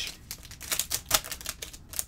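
Foil wrapper of a Topps Stadium Club baseball card pack crinkling and tearing as it is ripped open by hand: a quick, uneven run of sharp crackles.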